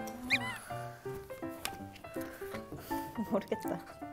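Edited variety-show soundtrack: light background music under women talking in Korean, with a brief high rising squeak just after the start.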